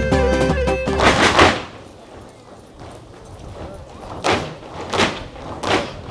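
Live Cretan folk dance music with steady melodic lines that breaks off about a second and a half in. After a quieter gap come three or four short noisy swishes, each well under a second apart, near the end.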